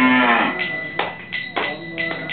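A cow mooing once, a single loud call of about half a second at the start, followed by sharp hand claps at a steady beat.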